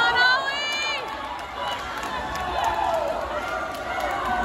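Spectators shouting encouragement at a swim race, with a high-pitched rising yell in the first second and more shouting voices after it, over the echoing din of an indoor pool.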